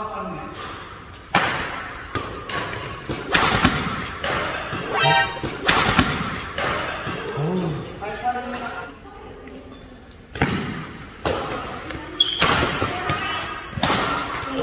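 Badminton racket strikes on a shuttlecock during a doubles rally, a series of sharp, irregular hits echoing in a large hall, with a hard smash about six seconds in.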